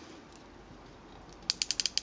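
Plastic ratchet joint on a Mastermind Creations R-02 Talon transforming robot figure clicking as an arm is turned: a quick run of about seven sharp clicks in half a second, starting about one and a half seconds in.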